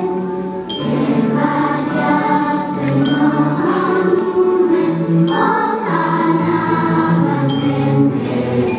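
Children's choir singing a Christmas song, with sustained melodic lines over low held notes from an electronic keyboard accompaniment.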